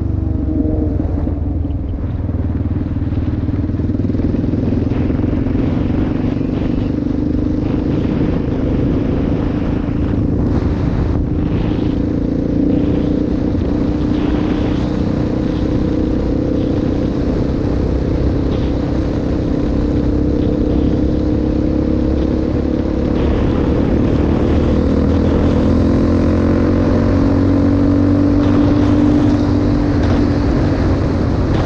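Yamaha Raptor 700R ATV's single-cylinder four-stroke engine running while riding at a steady cruise, over a constant rush of road noise. Its pitch and loudness climb near the end as it speeds up.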